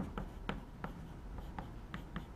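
Chalk writing on a blackboard: a handful of short, irregular taps and strokes of the chalk against the board.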